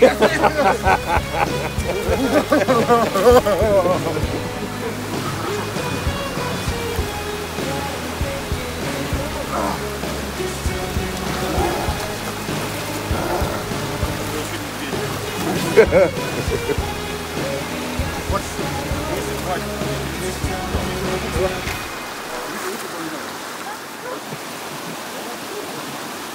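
Mountain stream water rushing over rocks, with a man's voice in the first few seconds and background music laid over it; the music's low part drops out near the end, leaving mostly the sound of the water.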